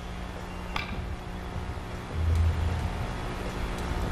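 A cue tip striking a three-cushion carom ball, one sharp click about a second in, over a steady low hum. A dull low thump follows about two seconds in.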